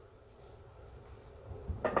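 Hands spreading flour on a granite countertop: faint quiet rubbing, then a couple of light knocks near the end.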